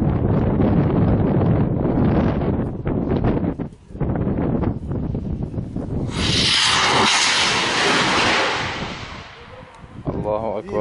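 Homemade rocket launched from an improvised tube launcher: a sudden loud rushing hiss about six seconds in, fading away over about three seconds as the rocket flies off. Before it, wind buffets the microphone with a low rumble.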